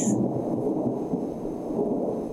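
Low, steady rumble in the soundtrack of a horror drama scene, dark and thunder-like, with no sharp crack or clap.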